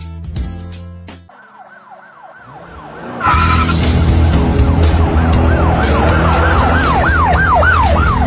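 A siren wails in quick rising-and-falling sweeps, about three a second, as a music track fades out. About three seconds in, a loud beat with heavy bass comes in under the siren, which keeps sweeping.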